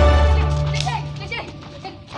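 Background music fading out over the first second and a half, while children shout and call out to each other at play.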